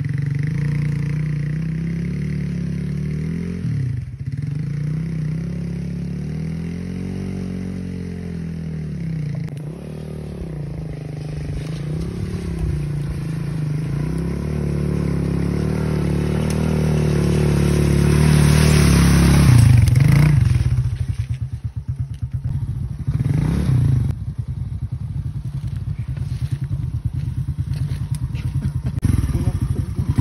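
Small Chinese moped engine revving up and down as the bike rides through puddles on a muddy track, growing louder as it approaches and loudest about two-thirds of the way in. After that it runs choppily at low revs close by.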